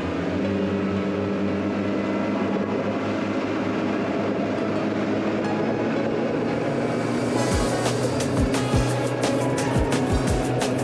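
Background music over the steady running of a RIB's Yamaha outboard engines at speed. From about seven and a half seconds in, a string of sharp thumps joins it, a few a second.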